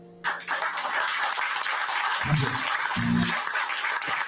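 Audience clapping that starts suddenly just after the last guitar chord has died away and carries on steadily, with a voice sounding briefly twice in the middle.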